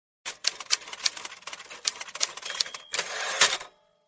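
Typewriter sound effect: a rapid run of key strikes for about two and a half seconds, a brief bell ding, then a longer rasp of the carriage return just past three seconds in.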